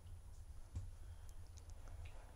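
A pause with only faint background noise: a steady low rumble and a few small clicks, the clearest about three-quarters of a second in.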